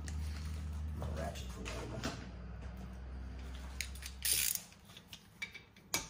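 Light metallic clinks and rattles of tools and brake hardware being handled at a car's front brake caliper, with a louder short scrape about four seconds in. A steady low hum runs underneath and cuts off about four and a half seconds in.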